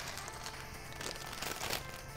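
Plastic LEGO pieces and their bag rustling and clicking as they are handled, with a few short clicks, over faint background music.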